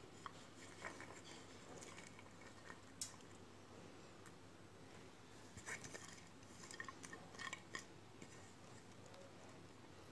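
Near silence, with faint light rustles and a few soft clicks as chopped onions and spices are tipped from a plate onto shredded cabbage in a steel bowl; the clicks come mostly in the second half.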